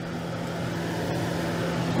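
Range hood fan over an electric stove running on its low setting: a steady hum with a rush of air, growing slightly louder toward the end.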